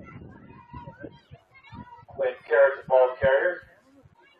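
High-pitched voices shouting from the crowd or sideline: four loud calls in quick succession about two seconds in, after a couple of seconds of faint background voices.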